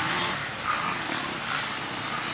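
Enduro motorcycle engines running at a distance on the dirt course, a steady drone with no bike close by.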